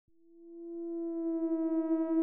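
A single steady electronic note swelling in over the first second, with higher overtones filling in as it grows: the opening note of synthesizer intro music.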